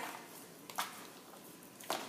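Hands mixing raw chicken pieces in a plastic container: quiet, wet squishing with two brief soft knocks about a second apart.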